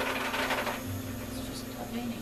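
Soft background music with sustained, held notes. About the first second also carries a short breathy, hiss-like noise.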